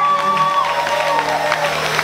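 A live band's final held note rings out and fades about half a second in, and the audience starts clapping and cheering.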